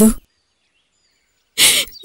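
A woman's voice finishes a word, then about a second of dead silence, then a short sharp breath from a crying woman, a tearful gasp just before she speaks.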